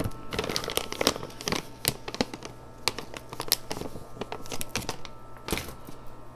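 Irregular crinkling and crackling of a plastic bag being handled, in a series of sharp uneven crackles.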